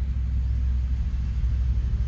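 A steady low rumble, even in level, with nothing else standing out above it.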